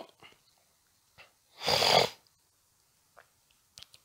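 A single nasal snort through a congested nose, about half a second long, a little before the middle. The sniffing comes from someone with a cold and a blocked nose.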